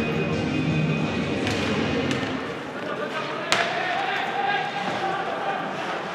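Ice hockey rink ambience: a crowd's voices and chanting echoing in the hall, with sharp clacks of sticks and puck from play on the ice, the loudest a single crack about three and a half seconds in.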